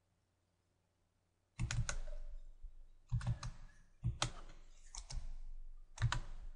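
Sharp clicks from a computer mouse and keyboard in small quick groups, about one group a second, starting about a second and a half in, each with a dull thud.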